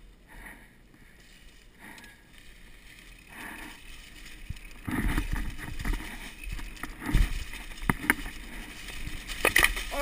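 Downhill mountain bike rolling down a rocky dirt trail. It is quiet at first, then from about halfway in comes a fast clatter of knocks and rattles as the tyres hit rocks and the bike shakes, with the sharpest hits about two seconds apart near the end.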